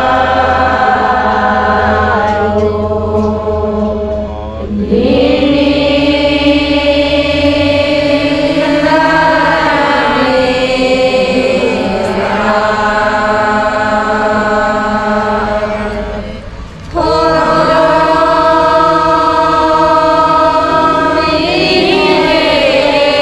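A group of women chanting a prayer together in unison, in long drawn-out sung phrases. There are brief pauses for breath about four and a half and sixteen and a half seconds in.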